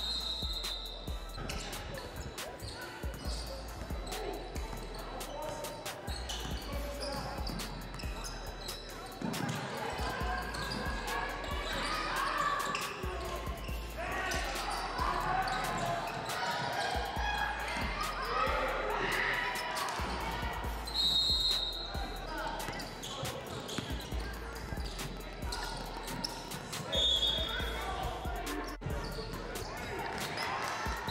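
A basketball being dribbled and bouncing on a hardwood gym floor during play, with voices of players and spectators in the hall throughout.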